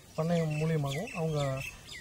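Birds chirping: a run of short, curving calls starting about a second in and continuing as the voice stops.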